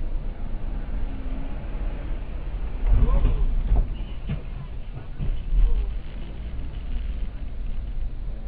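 Steady low rumble of road and engine noise inside a moving car's cabin on a wet street. About three seconds in it grows louder for a second, with a voice or other pitched sound mixed in.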